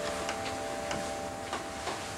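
A clock ticking slowly, faint ticks about every half second, under the fading tail of soft background music.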